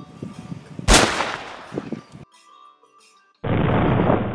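A single loud rifle shot about a second in, its report trailing off. Near the end a steady rush of outdoor noise starts abruptly.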